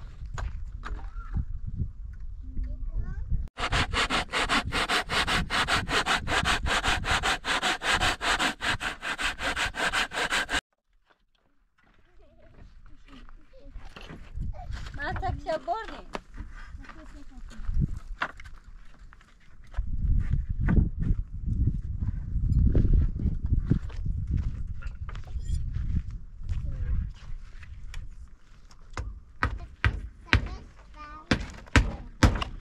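Hand saw cutting a wooden plank in quick, even back-and-forth strokes for about seven seconds. After a short silence come irregular knocks and hammer blows on wooden boards, with a few brief voices.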